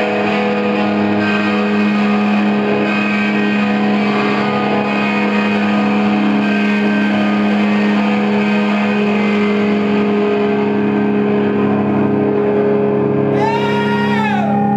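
Amplified electric guitars and bass from a live rock band holding a sustained, distorted drone. Near the end, several tones slide down in pitch.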